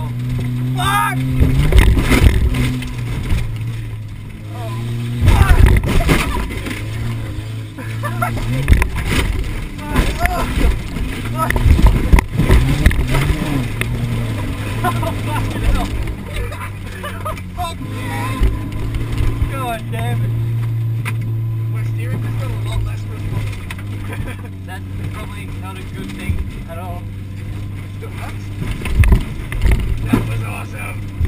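Car engine running and revving, heard inside the cabin while driving over a rough dirt track, with repeated loud thumps and rattles as the car hits bumps.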